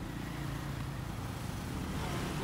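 Street traffic of motorbikes and cars passing, a steady low engine hum.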